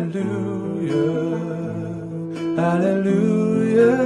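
Acoustic guitar plucking slow, sustained chords of a ballad, with a male voice holding long notes over it; the chords change about a second in and again past the middle.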